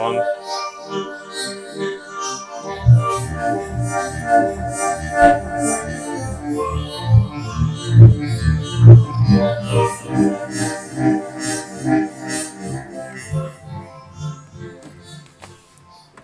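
Roland JD-800 digital synthesizer played on a factory preset: sustained chords, joined about three seconds in by a pulsing low bass line, then dying away near the end.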